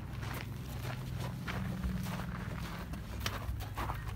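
Footsteps on gravel as a person leads a horse, with uneven scattered crunches and a steady low hum underneath.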